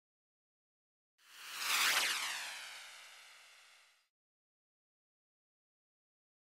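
Transition whoosh sound effect: a swelling rush with a cluster of tones sliding downward in pitch, peaking about two seconds in, then fading and cutting off abruptly about four seconds in, with dead silence around it.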